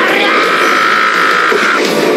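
A man's long, held yell in an anime soundtrack, breaking off shortly before the end, over loud rock background music.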